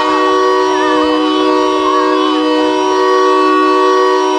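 A loud, steady, sustained tone of several pitches sounding together, like a horn or a held chord, that neither rises nor falls. Wavering pitched sounds ride over it for the first half.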